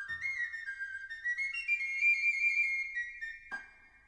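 A flabiol (small Catalan pipe) plays the opening of a sardana: a rising run of high notes, then a long held note. A single sharp tamborí drum stroke comes about three and a half seconds in, the cue that closes the introduction before the cobla comes in.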